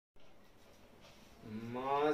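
A man's voice begins a long, held sung note about one and a half seconds in, rising slightly in pitch. It is the opening of a chanted Urdu salaam elegy. Before it there is only faint hiss.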